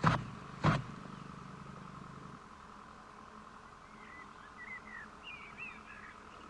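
A roe deer barking: two loud calls, one at the start and one under a second later, ending a series. Birds chirp faintly near the end.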